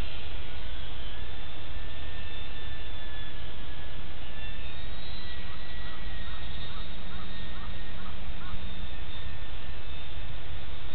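Thin, distant whine of an ultra-micro electric RC plane's brushless motor and propeller, its pitch slowly rising and falling as it flies, over a steady rushing background. In the middle a bird gives a run of about eight short calls.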